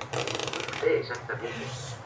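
A fast rasping rattle lasting under a second, then a few short, soft vocal sounds from a woman.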